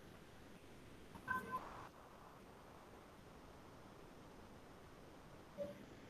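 Near-silent room tone with a short electronic beep, two steady tones at once, about a second and a half in, and a faint brief blip near the end.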